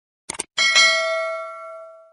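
Subscribe-button sound effect: a quick double click, then a notification bell chime that rings out and fades over about a second and a half.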